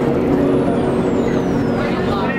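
Subway car running, a loud steady rumble with a thin high whine that falls steadily in pitch over about two seconds as the train slows.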